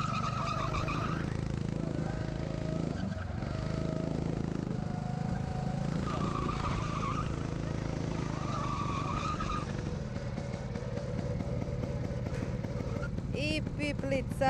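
Go-karts running on a track, a steady engine drone with brief high tyre squeals three times as they corner.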